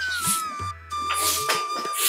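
A broom sweeping the ground in short swishes, three strokes less than a second apart, over background music with one long held note that slides down and then holds steady.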